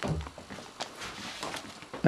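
A quiet room with a few faint, scattered taps and knocks and a low rumble about a second in.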